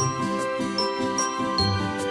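Background music: a light tune with short high bell-like chimes over a steady ticking beat and bass notes.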